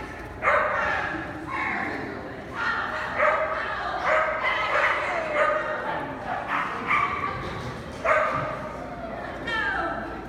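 A dog barking repeatedly in short, high-pitched yips, roughly one every half second to a second, each dropping slightly in pitch.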